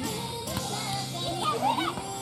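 Several high young female voices calling and shouting, over steady background music.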